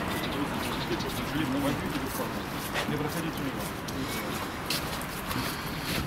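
Low voices in a brief exchange over steady street background noise, with a few sharp ticks of footsteps on wet, slushy paving.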